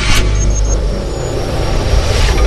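Logo-intro sound design: a loud, deep rumbling drone, with a short whoosh just after the start and another swelling near the end.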